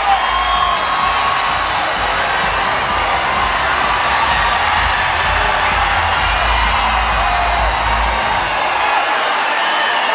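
Large audience cheering, whooping and screaming over loud music from the venue's sound system. The music's bass drops out near the end while the cheering carries on.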